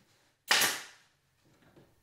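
A pneumatic nail gun firing once into a plywood sheet: one sharp shot about half a second in that dies away quickly.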